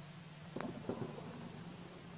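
Quiet background with a faint steady low hum, and two soft, brief knocks about half a second and a second in.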